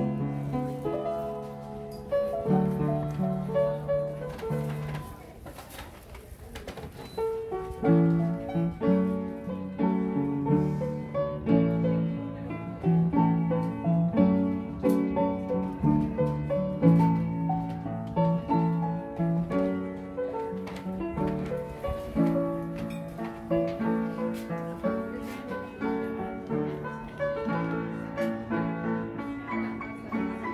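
Antique upright player piano playing a tune on its own, with rapid successive notes as the roll mechanism works the keys and hammers. The playing turns softer for a few seconds around five seconds in, then comes back louder.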